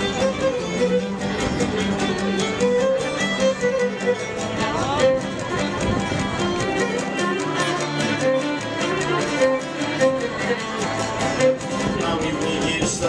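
Cretan folk dance music: a bowed string melody over a fast, steady plucked-string rhythm.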